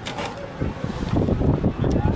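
Wind buffeting the microphone: an uneven, gusty rumble.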